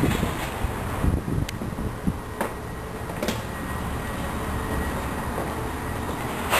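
Footsteps walking indoors: a few sharp steps roughly a second apart, over steady low background noise.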